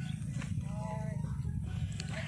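Steady low wind rumble on the microphone, with a faint distant pitched call, voice-like, from about half a second in to a second and a half.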